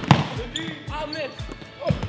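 A basketball dribbled on a hardwood gym floor: a loud bounce just after the start, a softer one about half a second in, and another loud bounce near the end.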